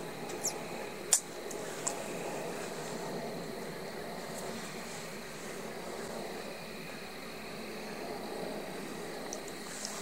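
Quiet steady background hiss with a faint high steady tone, and three short clicks in the first two seconds.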